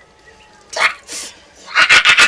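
A man's short, sharp breaths: a gasp, a high hiss of air, then a louder gasp near the end, as a wet cloth is dabbed on his forearm.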